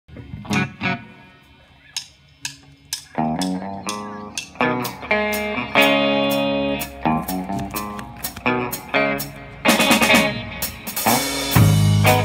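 A live rock band playing the opening of a song: electric guitar chords ringing out over spaced single drum and cymbal hits, building up. Near the end the full band comes in, with bass guitar and a busier drum kit, louder.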